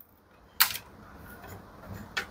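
Silence for about half a second, then a single sharp click and faint handling noise as hands work the washing machine's wiring and multimeter probes.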